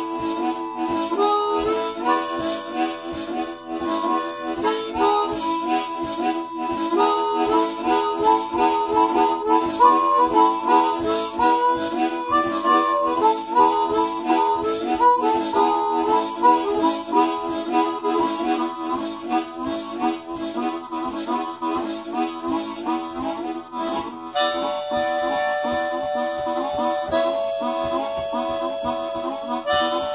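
Two harmonicas improvising together: a steady held note under a quick, moving line of notes. Near the end the quick notes give way to long held chords that shift once.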